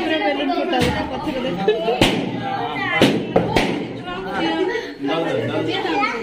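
Several people talking and calling out over each other around a birthday cake, with a handful of sharp pops or knocks in the first few seconds.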